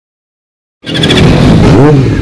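Yamaha YZF-R6 inline-four motorcycle engine breathing through an Arrow Thunder slip-on silencer. The sound cuts in just under a second in with the engine idling, and near the end it is revved in one quick throttle blip that rises and falls.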